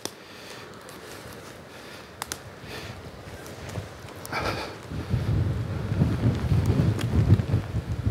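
Wind buffeting a phone's microphone, light at first and gusting strongly from about five seconds in, with a few faint ticks and rustles from walking through wet undergrowth.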